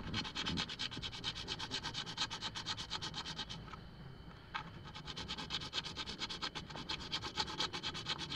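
A hacksaw blade worked rapidly back and forth inside the socket of a CPVC elbow fitting, cutting out the stub of broken pipe left in it. Quick scraping strokes, several a second, with a short break around the middle.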